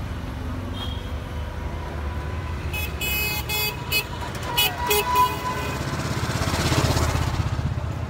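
Street traffic with engines running, a vehicle horn giving several short toots between about three and five seconds in, then a vehicle passing close, loudest about seven seconds in.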